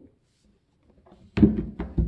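Near silence for over a second, then a sudden thunk followed by brief handling noise.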